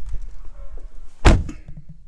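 A single sharp knock about a second and a quarter in, over low rumbling from the handheld camera being moved around inside the car.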